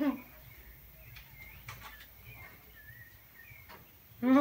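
A wooden Jenga block being slowly eased out of the tower, giving a few faint clicks of wood on wood against a quiet background. Faint short bird chirps sound in the background.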